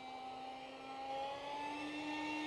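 Electric park jet in flight: the whine of its Fasttech 2212/6 2700 Kv brushless outrunner motor spinning an RC Timer three-blade carbon 6x3 prop, heard from a distance. A steady tone that rises slightly in pitch past the middle.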